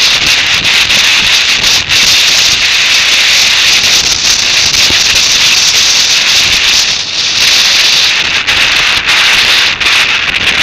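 Loud, steady wind rush on the microphone of a motorcycle-mounted camera at road speed, a hard hiss that covers any engine sound.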